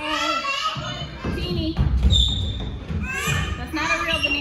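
Young children's high-pitched cries and wordless calls while playing, with low thumps about halfway through.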